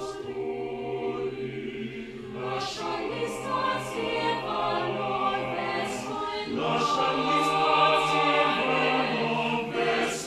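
Choir singing a cappella, several voice parts holding sustained chords, with crisp 's' consonants cutting through now and then. The singing grows louder in the second half.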